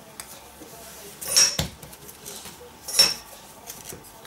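Metal fluted cookie cutters clinking against the worktop as circles are cut from rolled icing: two sharp metallic clinks about a second and a half apart.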